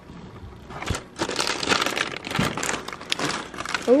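Plastic zip-top bags of snacks crinkling and rustling as they are handled in a cardboard box. The crinkling starts about a second in and goes on irregularly, with a couple of dull knocks.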